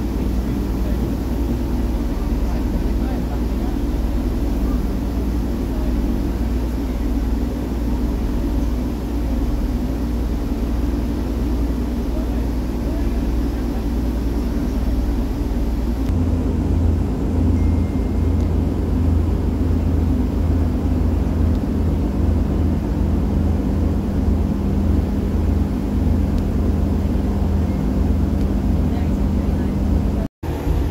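Inside a moving Class 144 Pacer railbus: its underfloor diesel engine and running noise give a steady low hum. About halfway through the engine note changes and a deeper hum comes in.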